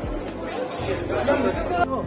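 People talking and chattering, with background music underneath.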